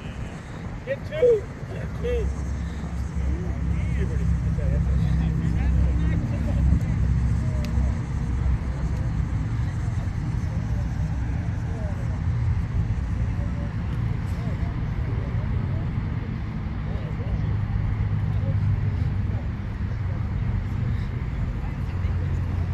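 Outdoor ballfield ambience: distant voices of players and spectators over a steady low rumble, with one brief louder call about a second in.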